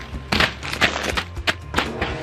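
Plastic snack packets tossed onto an inflatable air mattress, landing with about four short crinkly slaps spread through two seconds, over background music.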